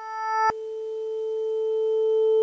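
A steady electronic tone, a low note with higher overtones above it, swelling steadily louder. About half a second in, a click cuts off the upper overtones, and a plainer tone carries on, still rising in loudness.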